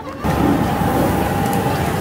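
Loud, steady ambient noise of a crowded outdoor market, with a faint steady tone running through it; it sets in abruptly just after the start.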